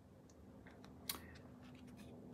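Faint handling of a 4K Ultra HD Blu-ray disc being slid into its slot in a cardboard disc book, with light rustling and a small click about a second in.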